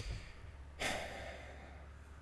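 A man sighing once, a breathy exhale about a second in that fades out.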